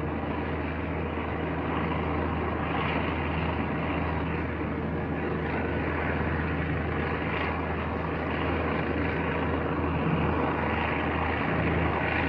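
Piston-engined bomber aircraft engines and propellers droning steadily at a constant low pitch.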